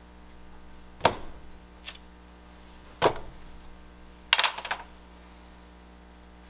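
A small hand tool knocking and clattering on a wooden work board: two sharp knocks about two seconds apart with a fainter one between, then a quick rattle of several clicks about four seconds in.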